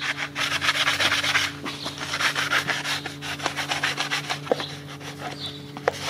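Sandpaper on a sanding block rubbed back and forth across the metal gasket face of a cylinder head under even pressure, a quick run of rasping strokes that grow quieter after about two seconds: the deck is being sanded clean for a new head gasket. A steady low hum runs underneath.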